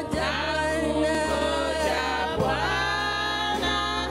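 Church praise team singing a gospel song into microphones, lead voices with backing singers, in held notes over a sustained low instrumental backing.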